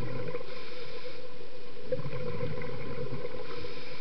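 Underwater sound of a scuba diver's exhaled bubbles rumbling out of the regulator, in two bouts, the second starting about two seconds in, over a steady hum.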